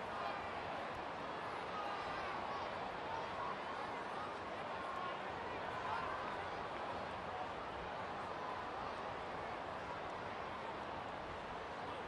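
Ballpark crowd noise: a steady hubbub of many indistinct distant voices, with no commentary over it.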